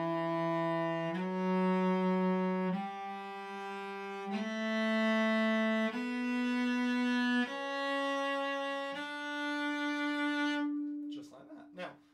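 Cello playing an ascending D major scale, one long, full-bow note per step, the notes changing about every second and a half up to the high D. The scale stops about a second before the end.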